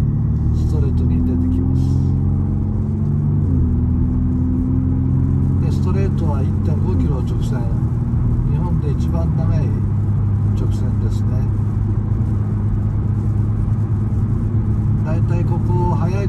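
Car engine under hard acceleration heard from inside the cabin, its pitch climbing and then dropping sharply at upshifts about three and a half, seven and nine seconds in. After the last shift it runs steady at high speed on the straight.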